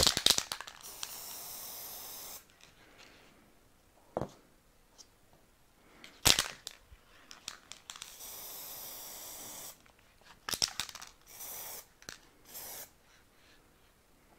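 Aerosol can of satin spray paint hissing in bursts: two sprays of about a second and a half each, then two short puffs near the end. A couple of sharp knocks fall between the sprays.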